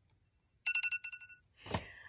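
Digital timer alarm going off: a fast run of high beeps, about nine a second, lasting under a second, signalling that the set time is up.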